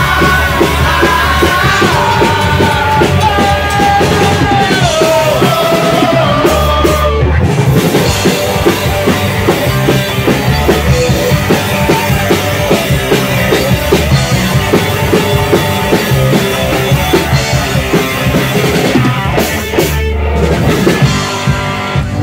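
Live punk rock band playing loud: electric guitar, bass guitar and drum kit, with a dense, driving drum beat.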